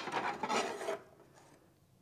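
A small square metal ash shovel knocks once, then scrapes through wood ash on the floor of a wood-burning stove's firebox for about a second before stopping.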